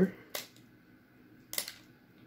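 Two short, sharp crackles of a foil Pokémon booster pack wrapper being worked open by hand, about a second apart.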